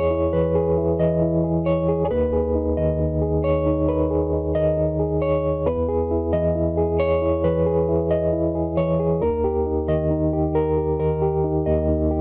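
Piano playing the song's closing section: a held bass note under quick arpeggiated chords, with the bass moving to a new note about every three and a half seconds. These are chords over a descending bass that the songwriter cannot name.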